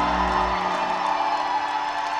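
A rock band's final held chord ringing out on electric guitars and keyboard. The bass drops away about half a second in, and the higher notes keep sounding as the chord slowly fades.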